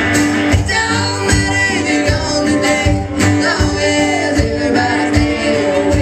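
Live country-tinged folk-rock song: a voice singing over strummed acoustic and electric guitar, with a low drum thump keeping the beat under it.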